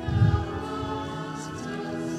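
A congregation singing a hymn with organ accompaniment, the organ holding steady chords under the voices. A short low thump sounds just after the start.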